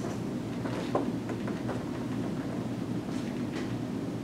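Meeting-room background noise: a steady low rumble with a few faint ticks and rustles, one tick about a second in.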